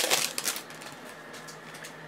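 A stack of 2008 Topps Finest football cards being thumbed through by hand: a quick run of clicks and sliding card edges in the first half-second, then only faint scattered rustles.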